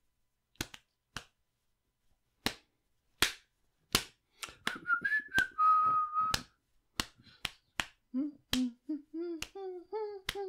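A man snapping his fingers along to a song that only he hears, loosely in time, with a short whistled phrase about five seconds in: a few notes, then one held note. Near the end he hums along again.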